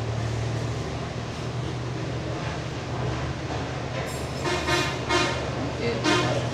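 A steady low hum, like a motor or engine running, with short high voice-like sounds about four to five seconds in.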